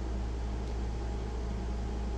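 Steady low electrical hum with an even background hiss: room tone with no distinct event.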